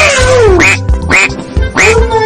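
Cartoon duck quacks, one long falling quack followed by three short quacks, over upbeat children's background music with a steady beat.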